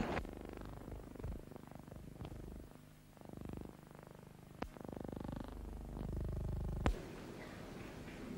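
Low hum and rumble of an old recording, swelling and fading a few times, with two sharp clicks, one near the middle and one near the end.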